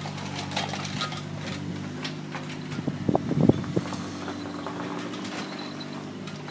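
A steady low mechanical hum like an idling engine, with scattered footstep-like clicks and a short burst of knocks about three seconds in.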